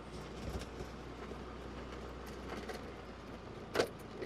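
Steady low rumble of movement and wind noise, with a few faint knocks and one louder sharp knock near the end.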